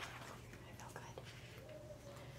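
A woman speaking one word quietly over faint room tone.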